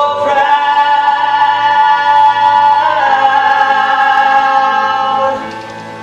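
A man and a woman singing a duet from a stage musical, holding one long note for about three seconds and then a second long note. The singing stops about five seconds in, leaving quieter accompaniment.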